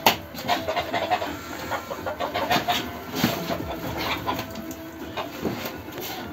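A man's strained grunts and hard breathing as he works a 100 kg sandbag up to his shoulder, mixed with short irregular knocks and rustles from handling the bag.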